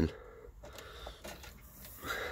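Faint rustling and a few light clicks of plastic being handled: a clear plastic bag and plastic wiring connectors being picked up.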